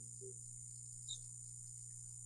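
A faint pause in a call: a steady low hum and high hiss, with one brief faint high chirp about a second in.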